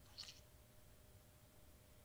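Near silence, broken by one faint, brief squelch about a quarter second in from the ink syringe, which has a lot of air in it.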